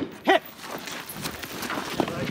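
Fading echo of a 7.62×51 FAL rifle shot, then faint scuffs and rattles of footsteps and gear on a dirt range.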